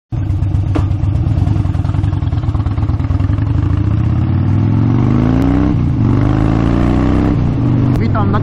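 Harley-Davidson V-twin motorcycle engine pulling away and accelerating through the gears, heard from the rider's seat. Its pitch climbs, dips briefly at a shift about six seconds in, climbs again and dips once more near the end.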